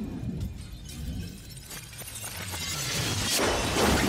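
Limousine crash sound effect from a music video: a low rumble builds, then a loud burst of shattering glass about three seconds in that carries on.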